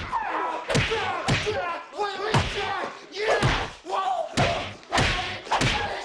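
Film fight sound effects: a run of heavy punch thuds and slams, about nine blows, roughly one every half-second to second, with grunts and shouts between them.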